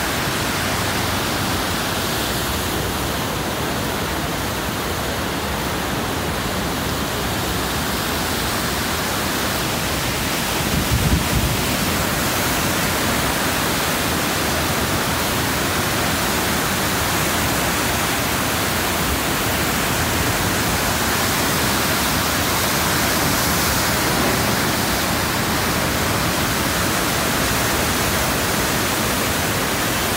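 Ottawa River rapids in spring flood: a steady rush of churning whitewater that does not let up. A brief low thump comes about a third of the way in.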